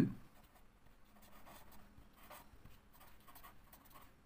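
Black felt-tip marker scratching on paper in short, irregular strokes as words are written by hand; faint.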